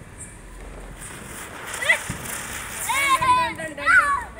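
A Diwali firecracker burning on the ground with a steady fizzing hiss, and one sharp pop about two seconds in. Voices shout excitedly near the end.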